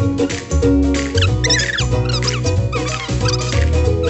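Upbeat background music with a steady beat and a pulsing bass line. Short, high, gliding chirps sound over it a few times.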